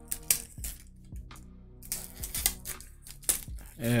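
Fingers picking and tearing at the tight cellophane wrap on a small perfume box, in scattered sharp crackles and clicks, over quiet background music.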